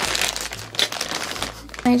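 Plastic chip bag of onion-flavored corn rings being crinkled and squeezed in the hands, a dense run of crackling rustles that stops briefly near the end.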